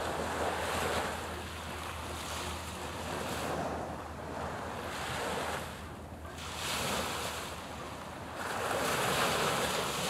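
Small sea waves washing in, swelling and fading about every two to three seconds, with wind on the microphone and a steady low hum underneath.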